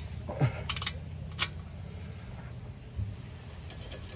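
Scattered metallic clicks and clinks of a socket wrench on the oil-pan drain plug as it is refitted and snugged down, with a soft low thud about three seconds in.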